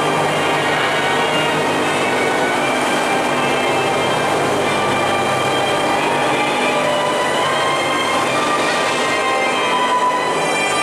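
Dark-ride soundscape: a steady, loud rumbling wash with sustained musical tones beneath it, the music becoming clearer near the end.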